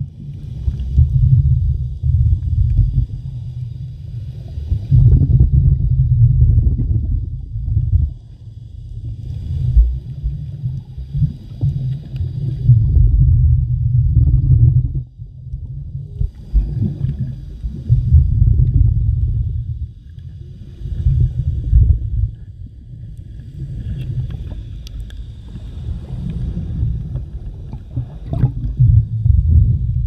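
Underwater recording: a muffled low rumble of moving water on the microphone, swelling and fading in surges every few seconds.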